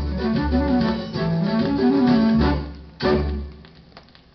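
Orchestra's closing bars played from a 1957 78 rpm shellac record, strings and plucked guitar carrying the tune after the singer's last line. The music thins out, a final chord sounds about three seconds in and dies away, leaving the faint crackle of the record's surface.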